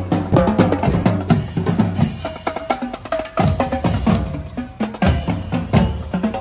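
Marching drumline playing a cadence: multi-drum tenor set, snare drums and bass drums struck in a dense, fast rhythm, the tenors' pitched tones over deep bass-drum beats.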